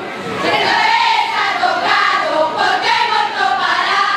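A large choir of young children singing a carnival comparsa song together.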